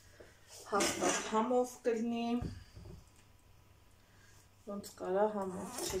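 A woman talking in short phrases, with a dull low thump about halfway through.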